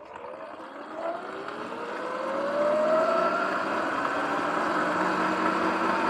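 Sur-Ron electric dirt bike pulling away: the whine of its electric motor and drivetrain rises in pitch as it speeds up. Wind and tyre noise grow louder with it over about three seconds, then hold steady.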